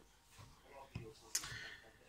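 A quiet pause in a man's talk, with faint breath and mouth sounds and one short, sharp click a little past halfway.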